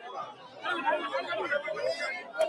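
Crowd chatter: many people talking over one another, growing louder about half a second in.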